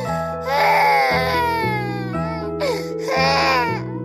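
A baby crying in two drawn-out wails, one about half a second in and one near the end, over steady, gentle children's lullaby music.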